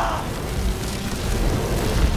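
Film sound effect of a large fire burning: a dense hiss with a heavy low rumble underneath.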